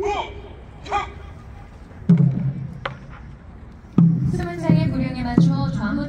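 Two drawn-out shouted calls, then traditional Korean ceremonial drums: one heavy drum stroke about two seconds in, followed from about four seconds by a steady beat of roughly one stroke every 0.7 s under held musical tones.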